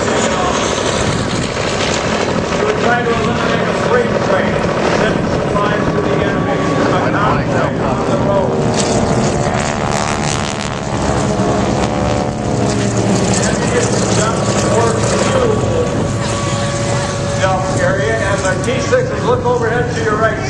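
North American T-6 Texan trainers flying low over the airfield, their radial engines droning, with one passing by about halfway through. Voices can be heard over the engine sound.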